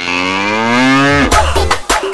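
A cow mooing: one long moo that rises slightly in pitch and ends about a second in, followed by music with a steady drum beat.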